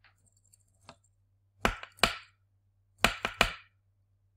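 Sharp taps on a small SW-420 vibration sensor circuit board, done to jolt it into detecting vibration: two taps near the middle, then three quick ones near the end.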